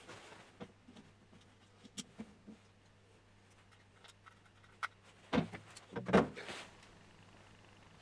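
Small clicks and taps of parts of a 3D printer kit being handled and fitted onto its frame, then a louder cluster of knocks and rattling scrapes a little after five seconds in.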